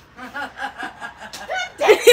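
Laughter: a run of quick, breathy laughs that starts soft and grows much louder near the end.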